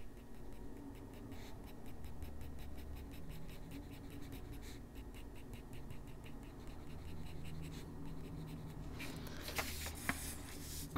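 Colored pencil scratching on toned gray drawing paper in quick, short, regular strokes, several a second, as fur is shaded in black. About a second before the end there is a louder rustle and slide as the sheet is turned on the desk.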